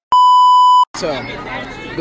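A single steady, high electronic beep lasting a little under a second, the test tone that goes with a colour-bars card inserted as an edit effect, with a brief dead silence either side. Voices and crowd chatter pick up again about a second in.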